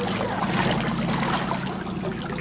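Shallow sea water sloshing and splashing around the legs of someone wading in water shoes, over a steady low hum.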